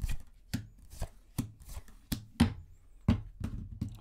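Tarot cards being dealt one by one onto a wooden tabletop: a quick, uneven series of about ten sharp taps, two to three a second.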